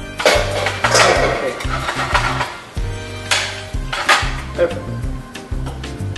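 A metal frying pan of spaghetti clanking and scraping on the gas stove as the pasta is tossed and stirred non-stop with the raw eggs, to make a creamy carbonara sauce rather than scrambled eggs. There are several loud metallic clanks near the start and again midway, over background music with a steady bass line.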